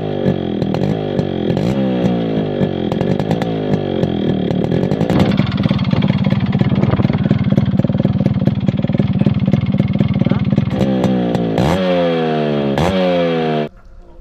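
Yamaha RX100's two-stroke single-cylinder engine, heard close to its exhaust, revved up and down again and again. It is then held at a steady higher speed for several seconds, revved up several more times near the end, and cut off suddenly.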